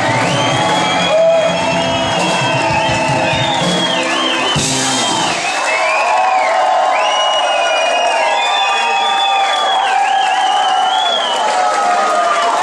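Live band with a saxophone section, keyboards and drums playing loudly with crowd cheering. About halfway through the bass and drums drop out, leaving high held and sliding notes over the crowd.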